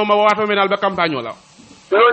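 A man speaking, his last word drawn out and falling in pitch, followed about a second and a half in by a short hiss lasting about half a second.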